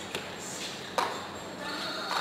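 Casino chips clicking together as the roulette dealer gathers bets off the table layout, with one sharp clack about a second in.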